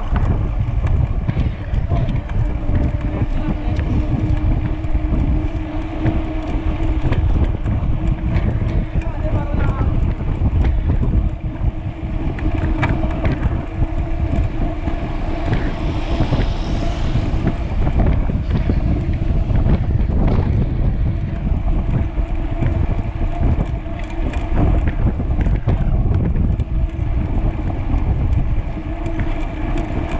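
Wind buffeting the camera microphone on a moving bicycle at about 25–30 km/h, a dense steady rumble mixed with tyre noise on a concrete road. A motor scooter passes alongside about halfway through, adding a brighter hiss for a couple of seconds.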